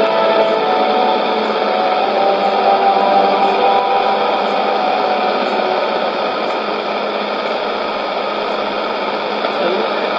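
Shortwave AM broadcast from a Sony portable receiver's speaker: faint music with held notes sinking under steady static hiss, leaving mostly static in the second half.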